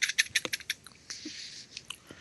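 An irregular run of small, sharp clicks, with two brief soft hisses in the second half.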